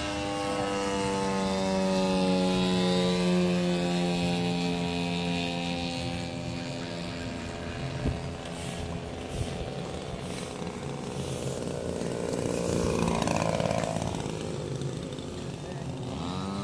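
Radio-controlled model airplane's engine and propeller droning in flight, its pitch falling slowly over the first half as the plane flies by, then swelling louder again about three-quarters of the way through on another pass.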